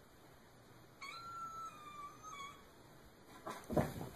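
A kitten gives one long meow starting about a second in, lasting a second and a half and sagging slightly in pitch at the end. A few sudden thumps and rustles follow near the end.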